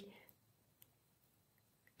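Near silence in a pause between spoken phrases, with a few faint short clicks in the second half.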